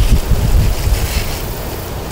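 Wind buffeting the microphone outdoors: a steady, fairly loud low rumble that eases slightly toward the end.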